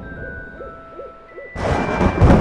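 An owl hooting four short, evenly spaced times over held orchestral notes. About one and a half seconds in, a sudden loud rumble like thunder breaks in.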